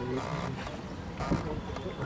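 Water and wind noise from a paddled shikara boat, with two short hissing swishes about a second apart and brief snatches of voices.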